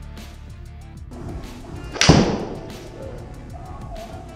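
A golf iron strikes a ball off a hitting mat: one sharp, loud impact about halfway through, with a short ring-out after it. Background music with a steady beat plays throughout.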